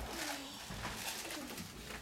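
Faint low human vocal sounds, two short murmurs falling in pitch about a second apart, over the murmur of a small audience room.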